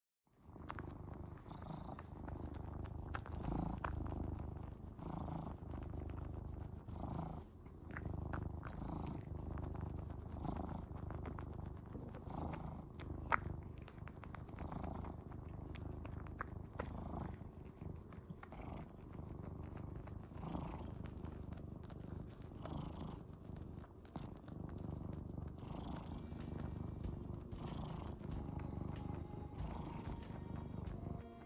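Brown tabby cat purring steadily while it suckles on its own tail, a kitten-like comfort behaviour; the purr swells and eases about every two seconds. One sharp click about halfway through.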